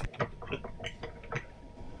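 A few faint, irregular clicks over the first second and a half, then quiet background hiss with a faint steady tone.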